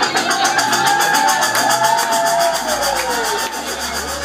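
Closing bars of a live acid-house track: a synth tone gliding slowly downward over a fast, even pulse, with a low drone swelling underneath as the music starts to fade.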